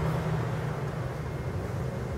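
A steady low rumble with a faint thin tone held above it, unchanging.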